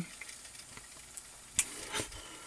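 Faint steady hiss of recording background noise, with a short sharp click about one and a half seconds in.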